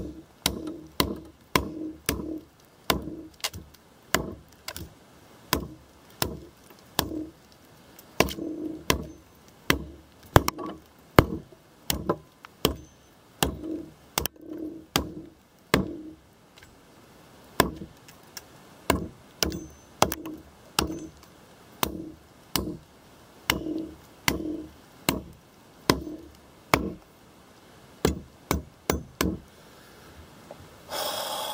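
Repeated strikes of an Ontario RTAK II, a large full-flat-ground knife, chopping into a log, about one to two blows a second, sometimes in quick pairs. Each hit is a sharp knock of the blade biting into the wood.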